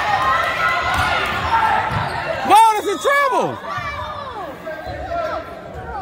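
A basketball bouncing on a hardwood gym floor during play, over a steady murmur of crowd voices in a large echoing gym. The loudest moment is a short burst of shouting about two and a half seconds in.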